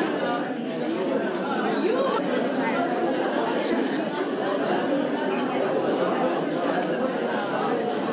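Background chatter: many people talking at once in an indistinct hubbub of conversation, steady throughout.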